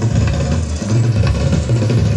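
Drum kit played in a solo: a fast, dense run of low drum strokes makes a steady rumble, with light ticks on top.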